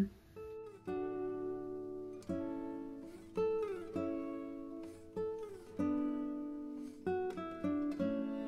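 Background music: a plucked string instrument, guitar-like, playing slow single notes about a second apart that ring and fade, a few of them sliding in pitch.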